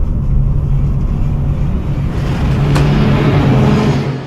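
A loud, low rumbling drone with a steady hum under it, swelling with a rising hiss over the last two seconds and cutting off suddenly: a horror-film sound-design rumble.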